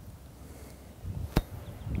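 Low wind rumble on the microphone, with one sharp click a little past halfway.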